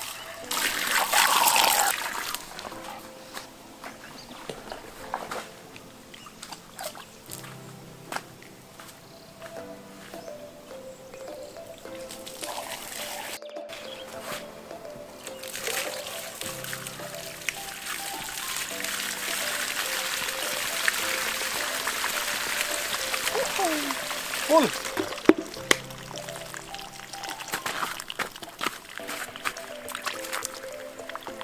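Water poured from a plastic bucket into the vertical pipe of a homemade PVC water pump, filling the pipe: a loud splashing pour about a second in, and a longer steady pour in the second half. Background music plays throughout.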